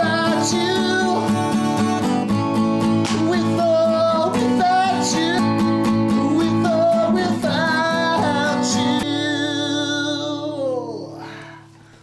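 Acoustic guitar strummed in chords while a man sings over it. About nine seconds in, the singing and strumming stop on a final chord that rings on and fades away.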